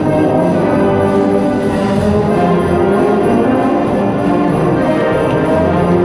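Concert wind band playing a swing arrangement of Christmas music, with flutes, saxophones and brass over a steady beat.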